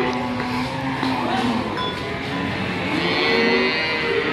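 Busy cattle-market ambience: background voices and vehicle engine noise. Near the end a cow begins a long low.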